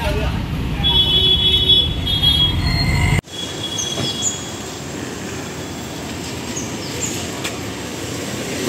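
Busy street noise around a car moving through a crowd: a steady low rumble with a few short high calls. It cuts off abruptly about three seconds in, giving way to quieter street background with a few short high chirps.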